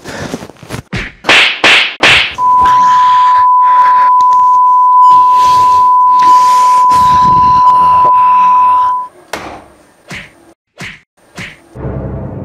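Comedy fight sound effects: a quick run of slaps and whacks, then a loud, steady, high-pitched beep tone for about six and a half seconds, then a few more separate whacks near the end.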